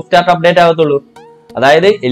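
A man's voice speaking in drawn-out syllables, in two stretches with a short pause between them.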